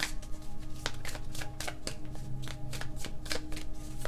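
A deck of cards being shuffled in the hands: a quick, irregular run of card snaps and flicks, several a second. Soft background music with steady held tones runs underneath.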